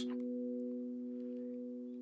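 Steel tongue drum's low B note ringing on after being struck with a felt mallet, a steady pure tone with overtones slowly fading away.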